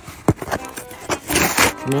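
Cardboard mailing box being torn open by hand: a click, then a short rip of tape and cardboard about a second and a half in, with music playing underneath.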